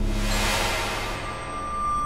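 Electronic music from a Mutable Instruments Eurorack modular synthesizer: a wash of noise fades out over the first second over low sustained drone tones, and a steady high tone comes in about a second in.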